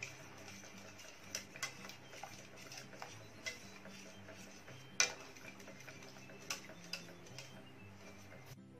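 Wire balloon whisk clicking irregularly against the inside of a stainless steel pot while a liquid is whisked, with one louder click about five seconds in.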